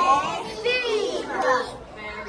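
Young children's voices, several talking and calling out at once, with high-pitched bursts about half a second and a second and a half in.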